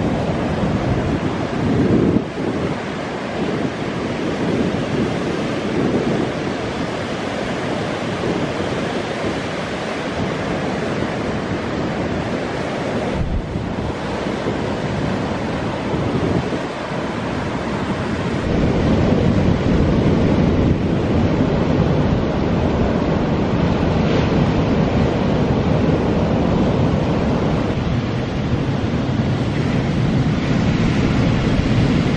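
Surf breaking and washing up the beach in a heavy onshore swell, with wind buffeting the microphone. The rush of the waves steps up louder a little past halfway.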